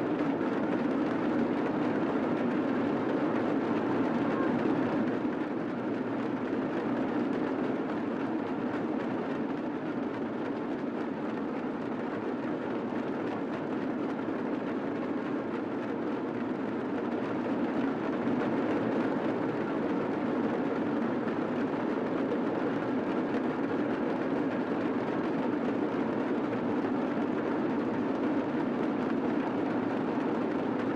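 A large group of damaru, hand-held hourglass drums, rattled together so that the strokes merge into one steady, dense roll.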